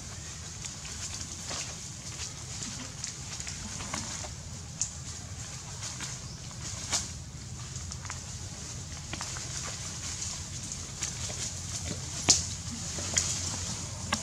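Rustling and crackling of grass and leaves as macaques scuffle and tumble in the vegetation, with scattered sharp clicks, the loudest about twelve seconds in, over a steady low hum.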